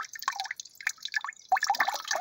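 Water dripping off a wet hand back into a plastic bucket of water: a quick, irregular run of small drips and splashes, thickest about a second and a half in.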